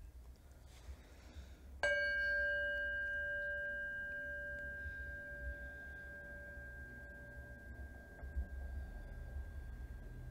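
Brass singing bowl struck once with a mallet about two seconds in, then ringing on with several steady overtones. The lower tone fades away after about six seconds, while a higher tone keeps ringing.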